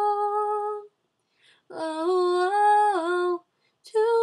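A girl singing alone with no accompaniment, on wordless held notes. The first note ends a little under a second in. After a short pause a second long note steps up in pitch and back down, and a new phrase begins at the very end.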